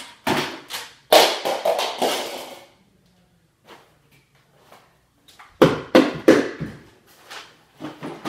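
Toys and objects clattering and knocking as someone rummages through plastic toy bins: a few knocks, a long rattling clatter about a second in, then a second cluster of knocks around the six-second mark.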